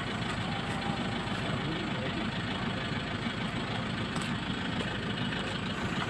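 A vehicle engine idling steadily.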